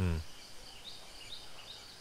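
Faint insect chirping over a quiet outdoor ambience, after a short spoken syllable at the very start.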